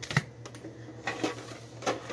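Foil Pokémon booster pack wrappers being handled and set down: a few short crinkly clicks and taps, the loudest just after the start.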